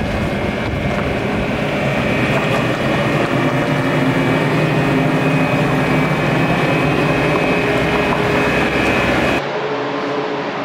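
Bobcat skid steer's diesel engine running steadily as the machine carries a heavy pallet of sawdust bales on its forks. Near the end it cuts off suddenly to a quieter steady room hum.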